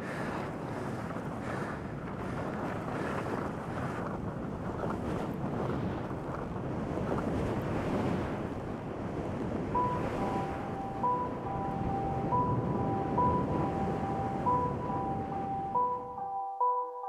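A steady, wind-like rushing noise. About two-thirds of the way through, a simple melody of short, high repeated notes comes in over it.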